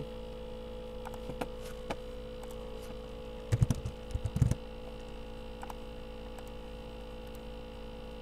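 Steady electrical mains hum from the recording chain, with a few light keyboard clicks and a short cluster of louder low thumps about three and a half to four and a half seconds in.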